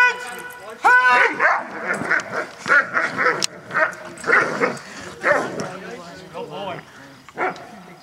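A young Doberman barking during a protection-work bite on a decoy in a bite suit, mixed with the decoy's loud shouts. Two loud calls come about a second apart at the start, then a quick run of shorter ones that thins out towards the end.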